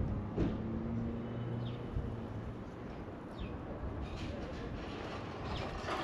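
Outdoor yard ambience with a low, steady vehicle engine hum that fades after about two seconds, and a few faint high chirps over a general background hiss.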